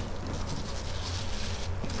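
Steady background hiss with a low hum: the recording's room tone, with no distinct handling sounds standing out.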